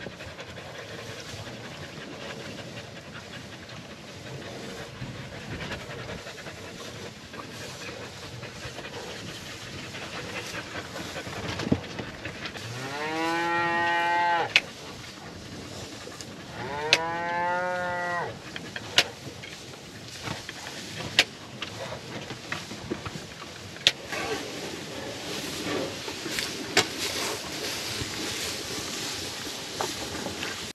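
Cattle mooing: two long moos a few seconds apart, each about two seconds long, rising then falling in pitch. Sharp clicks come now and then, the loudest of them just after the moos.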